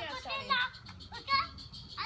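A toddler babbling and calling out in a high voice, several short sounds one after another.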